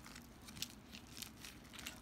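Faint, irregular crinkling and rustling of a clear plastic packaging bag being handled and opened.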